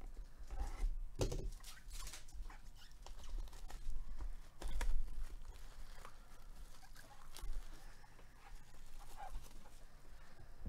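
Paper packaging rustling and crinkling as gloved hands pull it open and slide out a coin holder, with irregular light clicks and taps. The loudest handling noises come about a second in and again around the middle.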